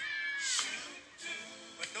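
Church keyboard music playing behind a sermon: a high held note that bends down and breaks off about half a second in. A man's voice comes in at the very end.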